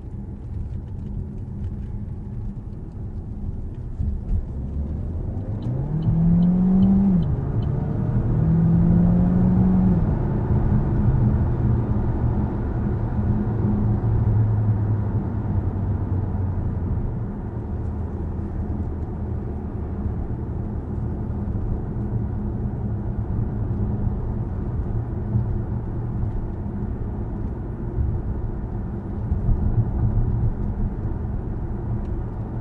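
Cabin sound of a 2023 Opel Grandland GSe plug-in hybrid accelerating hard: the engine note rises twice in pitch as the automatic gearbox shifts up, then settles into a steady low drone with road and tyre noise at motorway cruising speed.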